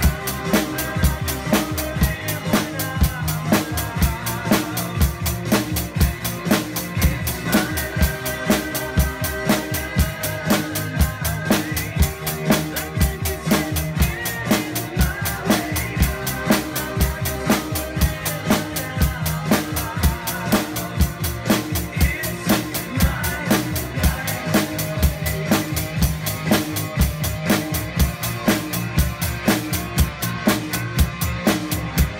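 Acoustic drum kit played in a steady beat, with bass drum, snare and cymbals, along with a recorded song whose bass and melody run underneath.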